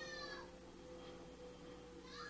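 A faint, high-pitched cry with a falling pitch in the first half second, over a steady low hum.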